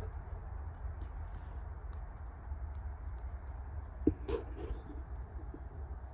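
Small wood fire in a tin-can hobo stove, crackling with sparse, faint pops over a steady low rumble. There is a single knock about four seconds in.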